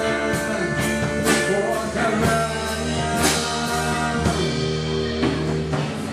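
Live rock band playing: two electric guitars, electric bass and a drum kit, the drums keeping a steady beat of about two hits a second with cymbals.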